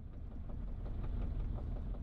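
Faint low rumble of a car driving along a street: engine and road noise.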